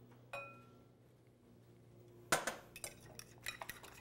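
One ringing clink about a third of a second in, then, from a little past halfway, a fork beating eggs and milk in a bowl: rapid, irregular clicks of the fork against the bowl.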